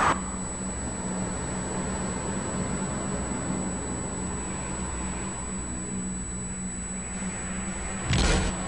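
A brief sigh at the start, then a steady rumble of city traffic with a constant low hum beneath it.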